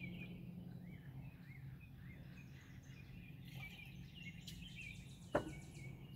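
A glass gin bottle set down on a wooden tabletop: one sharp knock about five seconds in. Underneath are faint, repeated bird chirps over a steady low hum.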